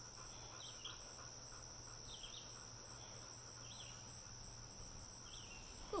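Faint outdoor ambience: a steady high insect trill, with a soft chirp about every second and a half.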